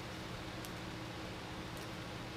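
Steady room tone: a low, even hiss with a faint hum underneath and two faint ticks.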